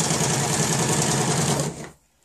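Janome electric sewing machine running at a steady speed, stitching through fabric with a fast, even rhythm, then stopping shortly before the end.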